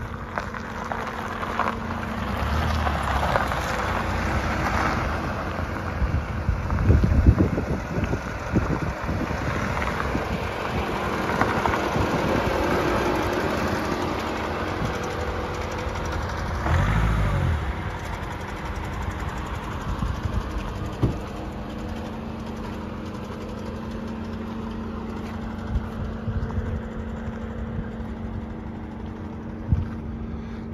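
Nissan X-Trail's dCi diesel engine running steadily as the SUV rolls slowly over a gravel track and then sits idling. Louder low rumbles come about seven and seventeen seconds in.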